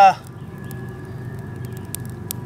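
Faint, scattered crackles from a small smouldering fire of damp tinder and twigs, over a steady low hum.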